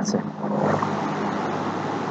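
A steady rushing noise with a faint low hum underneath.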